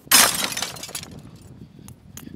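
A window pane shattering, hit by a batted baseball: a sudden loud crash just after the start, with the glass tinkling away over about a second.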